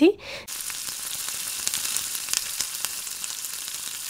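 Shredded cabbage, carrot and potato frying in oil in a pan, sizzling steadily, with light scrapes and clicks of a wooden spatula stirring them.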